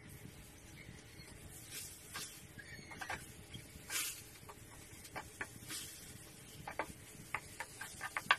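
A metal spatula scraping and tapping irregularly against a pan as minced chicken breast is stir-fried, with several short sharp clicks near the end.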